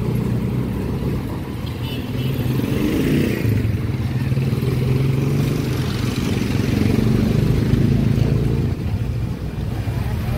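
Street traffic: engines of motorcycles, motorcycle tricycles and a jeepney running close by, a steady low engine hum. It grows louder toward the middle and eases briefly near the end.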